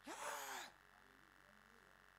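A preacher's single short, breathy "yeah", lasting under a second, followed by near silence with only faint room tone.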